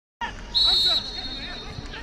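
A referee's whistle blows once, a short steady high blast lasting about half a second and starting about half a second in: the signal that the free kick may be taken. Voices and stadium background noise run underneath.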